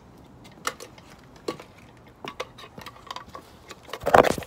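Footsteps on a wet stone patio: scattered light scuffs and clicks at an irregular pace.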